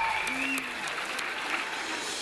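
Audience applauding, with voices in the crowd.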